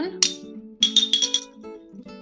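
A spoon tapped against a small ceramic cup: a quick run of about five clinks about a second in, the clinking that table manners say to avoid, over soft acoustic guitar background music.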